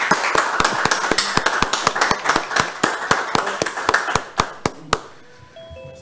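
Applause: several people clapping over a video call, irregular claps dying away about five seconds in. A few short faint tones sound just after.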